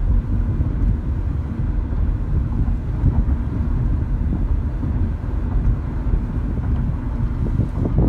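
Low, steady rumble of road and engine noise inside the cabin of a 2012 Nissan Sentra 2.0 driven at about 35 mph while accelerating.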